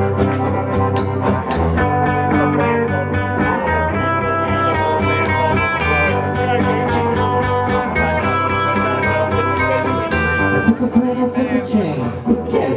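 Indie rock band playing live: strummed acoustic guitar and electric guitar over bass, drums and keyboard, with an even beat, in an instrumental stretch before the vocals come in.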